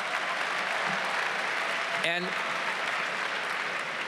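Large audience applauding steadily in an arena.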